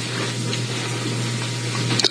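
Steady hiss over a low, even hum, which cuts off suddenly at the very end.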